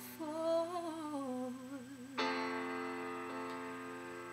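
A woman humming a slow, falling melody with vibrato. About two seconds in, a sustained chord from the accompaniment comes in and rings on, fading slowly.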